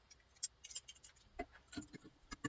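Faint, irregular small clicks and clinks of a bunch of car keys being handled near the ignition.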